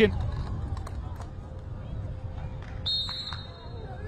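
Quiet stadium background with faint, distant voices, then a short, high referee's whistle about three seconds in, signalling that the penalty can be taken.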